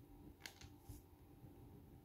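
Near silence with a faint ballpoint pen scratching on notebook paper: two short strokes, about half a second and a second in.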